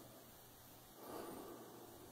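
Near silence: faint background noise, swelling slightly about a second in.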